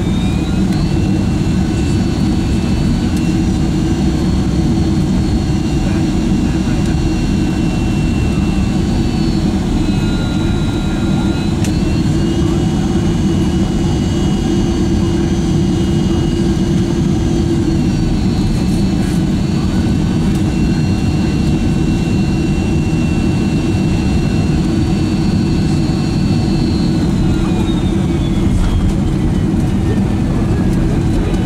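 Boeing 767-300's General Electric CF6-80 turbofan engines heard from inside the cabin on final approach: a loud, steady rumble with a high engine whine that steps up and down several times as thrust is adjusted. The whine falls away near the end as the jet comes over the runway.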